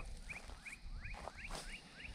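An animal calling in a run of short, rising chirps, about three a second, many of them in quick pairs, faint under low background noise.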